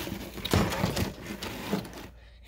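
Irregular rustling, scraping and light knocks in a guinea pig cage's pellet-and-hay bedding, as a plastic hideout is moved about and the guinea pig scurries.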